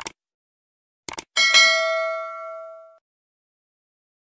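Subscribe-button animation sound effect: a short mouse click, then a couple of quick clicks about a second in, followed by a notification bell ding that rings and fades out over about a second and a half.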